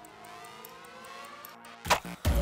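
Faint rising tones, then a single loud sharp crack just before the end: a crossbow firing.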